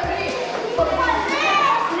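Children's voices: a boy talking amid other children's chatter, over background music with a steady low beat.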